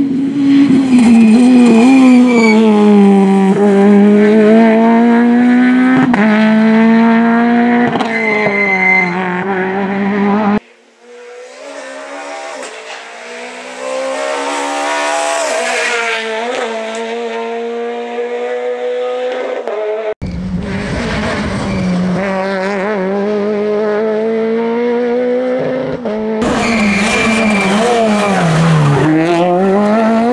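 Peugeot 208 VTi R2 rally car, its naturally aspirated 1.6-litre four-cylinder engine revving hard and changing gear, the note rising and falling as it brakes for and accelerates out of tight bends. This is heard over several passes, one of which builds up from far off after a sudden cut about ten seconds in.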